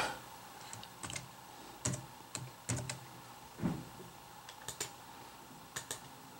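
Computer keyboard keystrokes: short, sharp taps at irregular spacing while data is edited in a text box.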